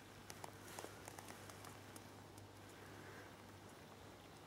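Near silence: faint outdoor room tone with a few soft scattered ticks and a faint low hum.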